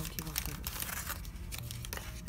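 Plastic packaging crinkling and rustling in irregular crackles as the pineapple cakes are handled.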